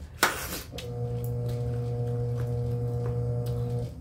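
A sharp sniff at the start, then a steady, unwavering low hum for about three seconds that cuts off abruptly near the end.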